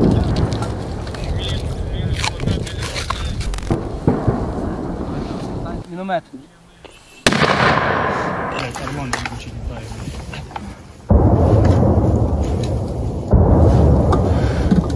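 Mortar firing: sudden bangs, each followed by a long low rumble that dies away, heard several times, with sharp reports at the start and about seven seconds in.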